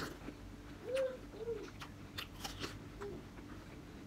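An apple being chewed with the mouth close to the microphone: scattered crisp crunches and wet clicks, with a few short low hums about a second in, just after, and near three seconds.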